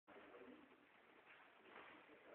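Near silence: faint room hiss, with a faint low tonal sound near the start.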